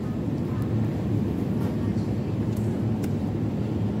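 Steady low hum of a supermarket's refrigerated display case and store ventilation, with a few faint clicks.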